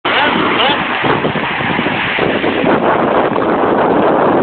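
Steady loud rush of wind on the microphone mixed with breaking surf, with men's voices talking over it.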